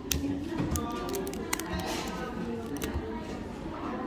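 A stack of paper pull-tab tickets being handled as a rubber band is worked off and the tickets are fanned out. The paper and band give a quick run of sharp clicks and snaps in the first three seconds.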